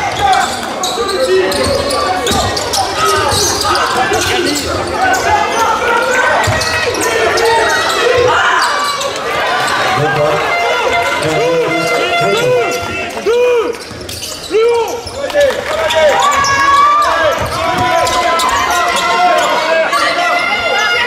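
A basketball bouncing on a hardwood court during live play, with players' and spectators' voices echoing in a large gym hall.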